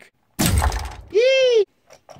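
A man's voice imitating a cannon blast: a sudden noisy burst that fades over about half a second. It is followed by a short, high falsetto cry that rises and falls in pitch.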